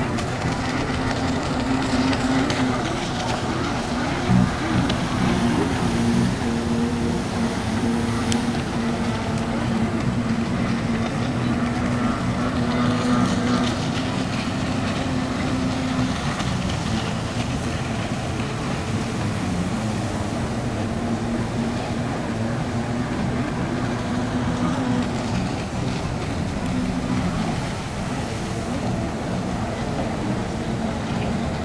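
Several racing stand-up jet skis' engines droning steadily across the water, pitch wavering as they accelerate and turn through the buoy course, with a brief knock about four seconds in.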